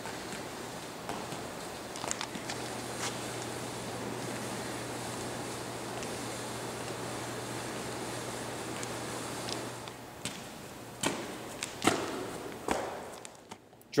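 Steady room noise with a low hum in a gym, broken by a few sharp taps of feet landing on the floor during the drills, the last three about a second apart near the end.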